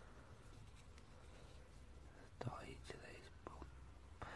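Near silence: quiet room tone with a low hum, and a brief faint whisper a little past halfway.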